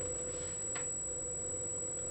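Steady electronic tone from powered bench electronics, with a single short click about three quarters of a second in.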